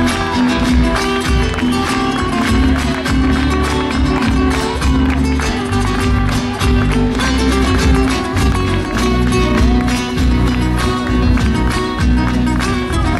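Live band playing a Mexican huapango, led by acoustic guitars over electric bass and keyboard.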